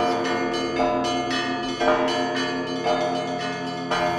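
Church bells ringing: several bells struck one after another in quick succession, about every half second, their tones lingering and overlapping.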